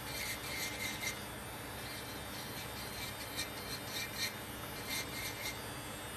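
Electric nail drill with an acrylic cuticle safety bit filing acrylic at a nail's cuticle area, in short repeated scraping passes with a faint high whine now and then.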